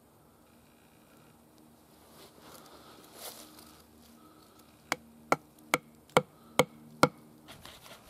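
Handling rustle, then six sharp hard taps about two a second, each with a brief ring, as an antler piece and a wooden drill shaft are knocked into place on a log to set up a flint hand drill.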